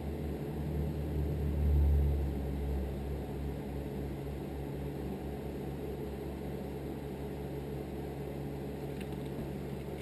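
Steady low hum of room tone, with a low rumble that swells and fades about two seconds in.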